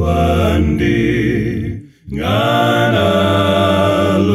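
Four-part a cappella male vocal harmony in a Zambian gospel hymn, all parts sung by one man multitracked, with a low bass part held under sustained chords. A phrase dies away to a brief break about two seconds in, and the next phrase comes in together.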